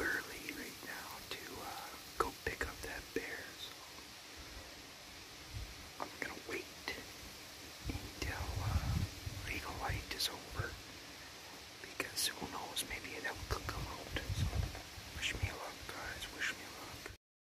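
A man whispering close to the microphone.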